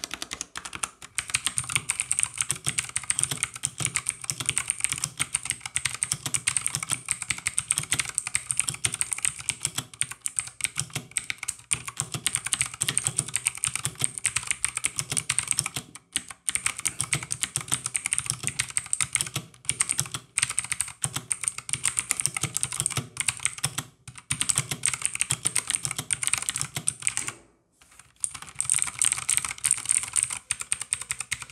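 Fast, continuous typing on an E-DRA EK361W 61-key mechanical keyboard. The first part is on Outemu Red linear switches; after a brief break about halfway through, the typing continues on Outemu Blue clicky switches.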